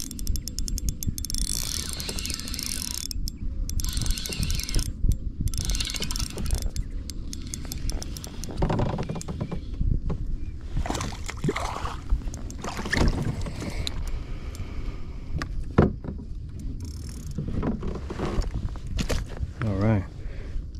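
Spinning reel being cranked while a small bass is fought and reeled in to a kayak, with a fast run of fine clicks near the start. Scattered knocks and water sounds from the hull and the fish follow over a steady low rumble.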